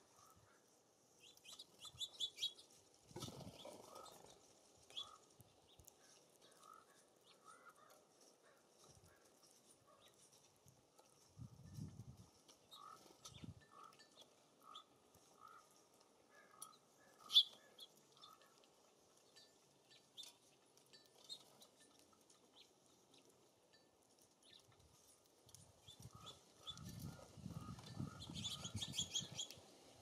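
Small songbirds at a feeder chirping faintly in short twittering bursts, loudest about two seconds in and again near the end, over a run of soft repeated lower notes. A single sharp click sounds about halfway through, and wind rumbles on the microphone in gusts, most strongly near the end.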